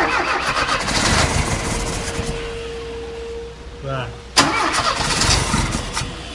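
Chevrolet Chevy 500's 1.6 four-cylinder engine being cranked by its starter twice, the first try lasting about three seconds and the second starting a little over four seconds in, without the engine running on its own. It is close to starting ('tá quase').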